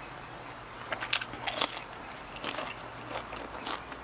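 A person chewing crunchy food close to the microphone: a quick run of crisp crunches about a second in, then softer, scattered crunches.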